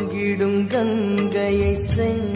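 Traditional Indian music: a sustained melody with small bends in pitch over a steady drone, with short drum strokes.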